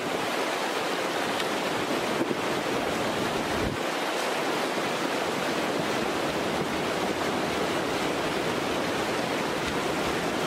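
Fast, silt-laden river rushing steadily over stones, with a couple of faint knocks from the bike or rocks.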